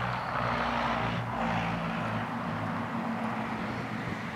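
A steady engine drone, with a wash of noise that swells over the first two seconds and then eases.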